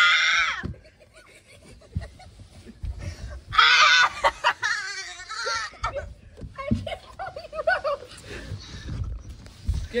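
A person's high-pitched scream, cut off under a second in, then another long wavering scream from about three and a half to six seconds in. Fainter voice sounds, rustling and low thumps of handling fill the gaps.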